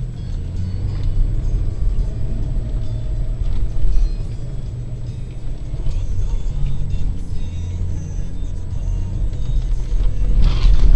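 SUV engine and drivetrain rumbling steadily from inside the cabin as it drives over desert sand dunes, with music playing along.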